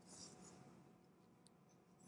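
Near silence: room tone, with a faint brief rustle near the start.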